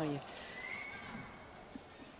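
Quiet indoor sports-hall room tone between badminton rallies, with a faint short squeak about half a second in and a couple of faint soft knocks.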